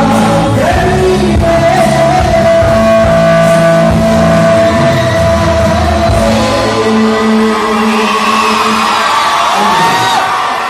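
A male singer singing live into a handheld microphone through a hall PA over a backing track, holding one long note for about six seconds; the low part of the accompaniment drops out about seven seconds in.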